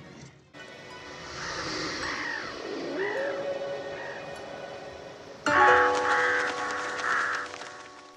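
Film soundtrack: quiet outdoor ambience with a few scattered bird calls, then about five and a half seconds in a sudden loud burst of music, a held chord of steady tones with a fluttering high line, which then fades.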